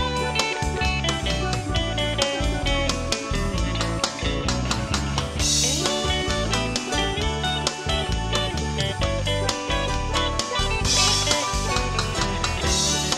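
Instrumental break in a country-blues band song: guitar over bass and drums, with a steady beat.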